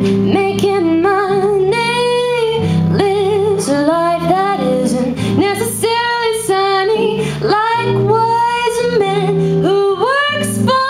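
Live band: a woman sings the lead melody with vibrato over electric guitar and a drum kit with regular cymbal strikes.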